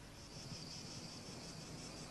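Faint, steady, high-pitched chirring of insects in the background.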